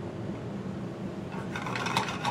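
Pine nuts toasting in foaming butter in a small stainless skillet, sizzling steadily while they are stirred.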